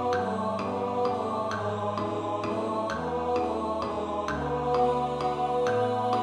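Score-playback rendering of a choral arrangement for a first-tenor rehearsal track: synthetic sung voices hold steady notes over piano chords struck about twice a second.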